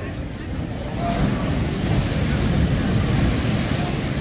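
Sea surf breaking on a rocky shore, a steady wash of noise, with wind buffeting the microphone and adding a low rumble. It grows louder about a second in.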